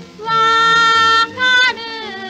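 A girl's voice singing a Japanese children's song with instrumental accompaniment: one long held note, a brief break, then a shorter, slightly higher note.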